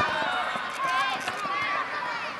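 High-pitched girls' voices shouting and calling out, several overlapping.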